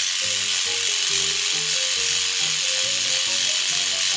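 Kids' Paw Patrol Skye electric toothbrush buzzing steadily as it brushes a plastic toy figure's teeth.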